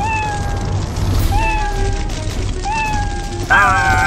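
A cartoon cat meowing three times, each meow under a second long and sliding slightly down in pitch. A louder, wavering wail starts near the end.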